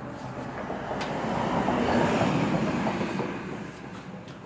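A passing vehicle whose rumble swells to a peak about halfway through and then fades away, with a brief click about a second in.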